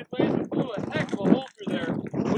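Speech only: a man talking, with short pauses between phrases.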